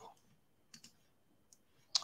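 A few faint, sharp clicks from a computer mouse or keyboard, spaced apart, with the loudest just before the end, as an SQL query is run.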